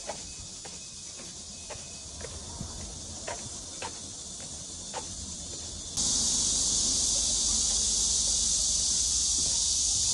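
Steady high-pitched insect chorus outdoors. Soft footsteps on a dirt path tick along during the first five seconds. About six seconds in, the insect chorus suddenly becomes much louder.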